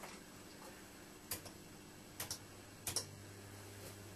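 A few sharp clicks, two of them in quick pairs, as the controls of a high-power supply are switched up, followed about three seconds in by a low electrical hum that gets louder as more power goes into a mercury lamp.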